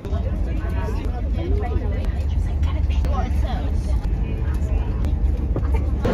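A group of children's voices chattering and calling out together, no single clear speaker, over a steady deep rumble.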